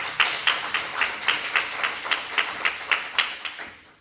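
Audience applauding, with one nearby pair of hands clapping steadily at about three to four claps a second over the general applause. The applause dies away near the end.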